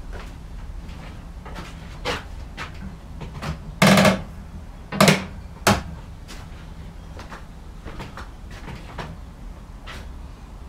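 Wooden knocks from a test-assembled cupboard frame being worked by hand to close up its joints: a loud short cluster about four seconds in, then two single knocks just under a second apart, with lighter clicks and bumps around them.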